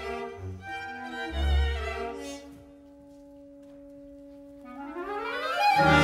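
Orchestral opera music. Short low bass notes and a few instrumental phrases thin out to a soft, held note, then rising glides swell into a loud sustained chord near the end.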